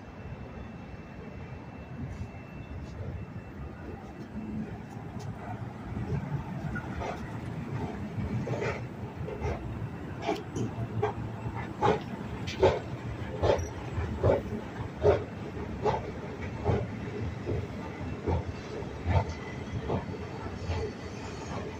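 Footsteps at an ordinary walking pace, a sharp knock about every second from about six seconds in, over a steady low rumble.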